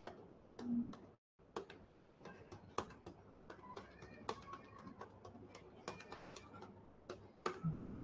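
Faint, irregular clicking of handheld calculator keys being pressed, a few presses a second.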